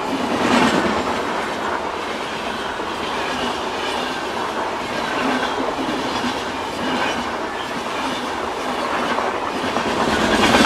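Indian Railways passenger coaches passing at speed close by: a steady, loud rush of steel wheels on rail with a rhythmic clickety-clack of the bogies, swelling slightly every second or two.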